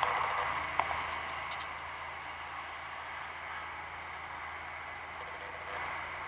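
Quiet, steady outdoor background hiss with a faint low hum, and a couple of soft clicks about a second in.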